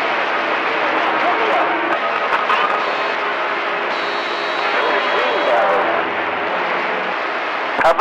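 CB radio receiver on channel 28 hissing with static, with faint overlapping voices of distant skip stations buried in the noise. A thin, steady high whistle sounds about halfway through.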